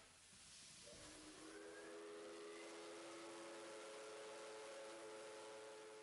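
Faint steam locomotive whistle sounding a steady chord of several tones over the hiss of escaping steam. The whistle starts about a second in and fades near the end.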